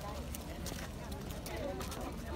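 Crowd walking on brick paving: irregular footsteps and sandal clicks with low murmured chatter.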